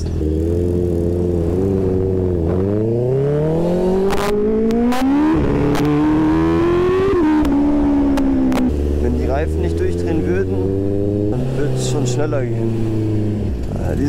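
Honda CBR650R inline-four engine idling, then revved hard from a standstill from about two and a half seconds in. The pitch climbs through first gear, breaks briefly for an upshift around five seconds, and climbs again in second. It then eases off to a steady cruise for the last several seconds.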